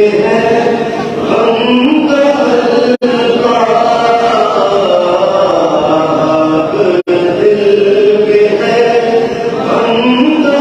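A man chanting an Urdu naat into a handheld microphone, in long held notes that glide up and down. The sound cuts out for an instant twice, about three and seven seconds in.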